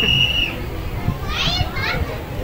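Children's high-pitched excited voices: a held squeal at the start, then a couple of short shrieks in the second half, over a low murmur of crowd noise.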